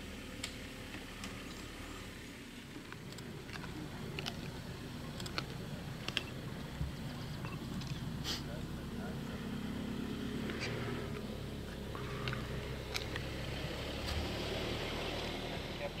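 A steady low rumble, like an idling vehicle engine, with scattered sharp clicks and faint voices.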